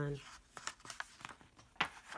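Pages of a hardcover picture book being handled and turned: soft paper rustling, with one sharper page flap near the end.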